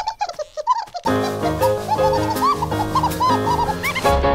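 Cartoon bird chattering in short high chirps. Music comes in about a second in, and the chirps carry on over it.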